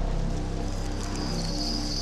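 A low steady droning hum cuts in suddenly. A high, steady cricket trill joins after about half a second.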